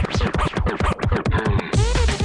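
Vinyl record scratched by hand on a DJ turntable over an electronic dance track, in short back-and-forth chops. The treble drops out for about a second, then the full track with heavy bass comes back in near the end.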